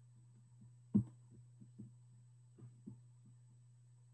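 A low steady hum with a few soft, faint thumps over it, the loudest about a second in.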